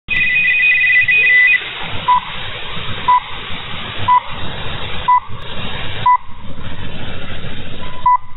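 Italcable shortwave time signal received in upper sideband through steady hiss. A broken two-note tone runs for about a second and a half. Then come five short 1 kHz pips, one a second, and a longer tone begins at the very end.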